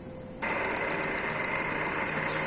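Straw applicator packaging machine running, its infeed belt motor and mechanism making a steady high whine with a fast run of fine ticks. About half a second in the sound jumps abruptly louder.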